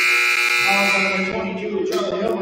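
Gymnasium scoreboard buzzer sounding one steady, loud, buzzing blast that fades out about a second and a half in, over crowd chatter.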